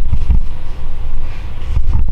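Low rumble with a few dull thumps, about a third of a second in and near the end.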